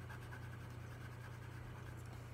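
Graphite pencil scratching faintly on paper in quick, repeated shading strokes, over a steady low hum.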